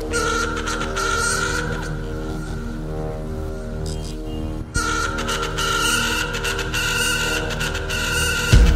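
Background music: held tones under a repeating pulse, with a brief break a little past the middle.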